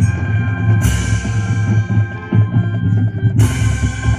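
High-school marching band playing: held brass chords over bass drum and percussion, with two loud crashes, one about a second in and one near the end.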